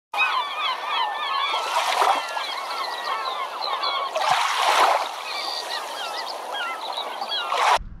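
Many birds calling over one another in short chirps and swooping calls, over a bed of rushing noise that swells about two seconds in and again around five seconds. It cuts off suddenly just before the end.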